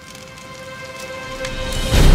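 Logo-intro sound effect: a crackling, hissing noise over a held musical drone, swelling steadily louder as a build-up to a hit.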